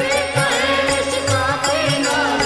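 Devotional Shiva bhajan sung by a male voice to a Rajasthani folk melody, over a steady held drone and irregular low drum beats.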